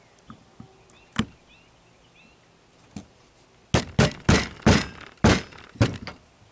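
Six sharp, hard knocks in quick succession as a shotgun primer is seated by hand into a hull resting on a soft-pine block, with a few faint clicks of handled tools before them.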